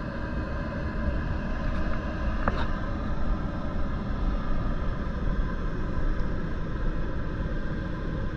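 Caterpillar C15 diesel engine of a Kenworth T800 boom truck running steadily to power the Altec crane's hydraulics, a low rumble with a few steady high tones over it.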